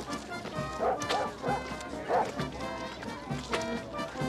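A dog barking several times, mostly in the first half, over background film music.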